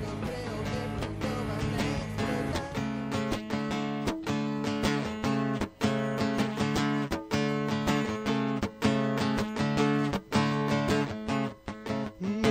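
Acoustic guitar strummed as a song's intro, settling into steady, even strokes about three seconds in.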